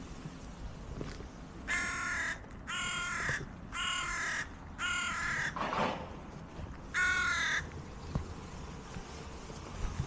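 A bird calling five times: four calls about a second apart, then one more after a short pause.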